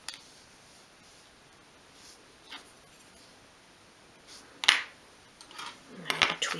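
A few small clicks and taps from close hand work with tiny metal drawer pulls and small tools on a cutting mat: a click at the start, a faint one midway, and one sharp tap, the loudest, about three-quarters of the way through.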